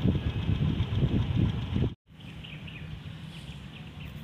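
Outdoor background noise: a loud, uneven low rumble for about two seconds, which cuts off abruptly. Then a quieter steady low hum with a few faint bird chirps.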